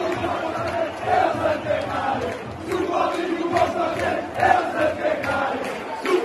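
Large football crowd chanting in unison, a rhythmic sung chant carried by many male voices.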